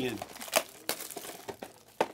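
Trading-card hobby boxes being handled on a table: wrapper crinkling with a few light clicks and taps of cardboard.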